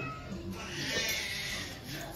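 A high-pitched, wavering cry lasting about a second.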